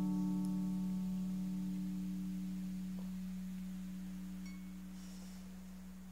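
An acoustic guitar's last strummed chord ringing out at a steady pitch and slowly fading away, its higher notes dying first.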